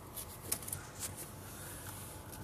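Quiet pickup truck cabin at low speed: a low, steady engine and road rumble, with a few faint light clicks about half a second and a second in.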